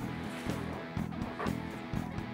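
Background music led by a strummed guitar, with a new chord struck about twice a second over held notes.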